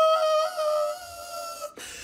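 A woman singing one long, high held note that drops in volume about a second in and breaks off shortly before the end.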